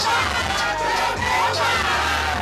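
A packed party crowd shouting and singing along over loud music with a heavy, pulsing bass line.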